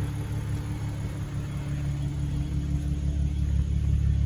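2013 Audi S4's supercharged 3.0-litre V6 idling steadily, a low even rumble that grows a little louder near the end.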